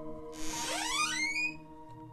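Eerie background music: a steady held drone with a rising, whistling sweep that starts about half a second in and fades about a second later.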